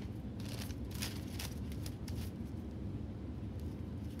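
Tint brush strokes spreading lightener over hair laid on aluminium foil, with soft foil crinkles: a series of short, irregular scratchy strokes, most of them in the first two seconds, over a steady low hum.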